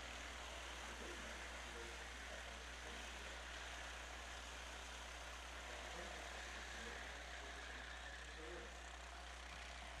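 Faint, steady sound of racing kart engines running at a distance, under a constant background hiss.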